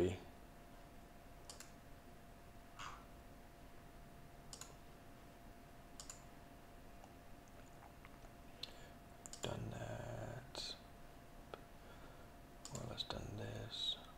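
Sparse, faint clicks of a computer mouse and keyboard, single clicks a second or two apart, over a faint steady hum. Twice near the end a short stretch of low muttered voice.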